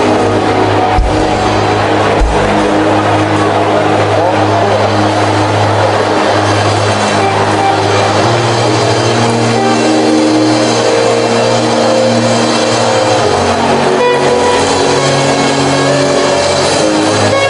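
Loud live band music: held bass notes that change every few seconds under guitar, with a few drum hits in the first seconds.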